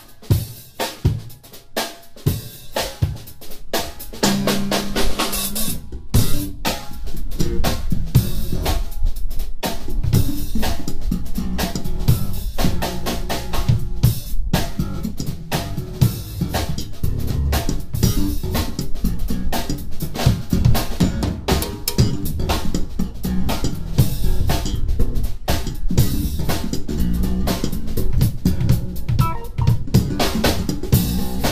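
Live jazz-fusion band playing: drum kit with kick and snare driving a groove under electric bass and the rest of the band. The drums start sparser, and about four seconds in the bass and full band come in and the music gets louder.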